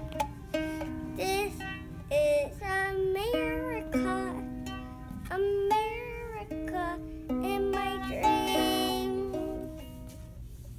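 Ukulele being strummed by a child, its strings ringing, while a high child's voice sings along in wavering phrases.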